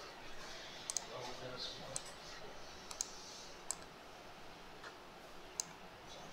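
Faint, scattered sharp clicks, about six in all, from a laptop's pointing device being clicked while files are opened and dragged for upload.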